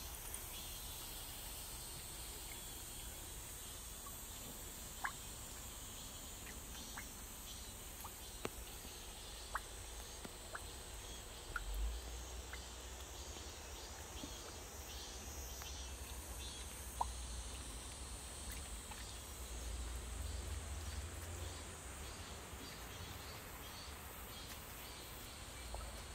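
Rain dripping: scattered single drops tick into standing water and off the roof edge over a faint, steady high-pitched chirring of insects. A low rumble of wind on the microphone swells about twelve seconds in and again around twenty seconds.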